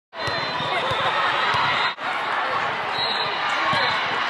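Busy gymnasium hubbub: many voices talking at once, with scattered dull thuds of volleyballs being hit and bouncing on the court. The sound cuts out briefly about halfway through.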